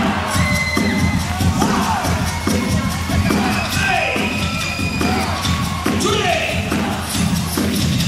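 Dance music with a steady beat played loud over stage loudspeakers, mixed with an audience cheering and children shouting.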